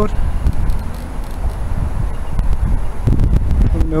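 Low, gusting rumble of wind on the microphone over outdoor street background noise, swelling about three seconds in.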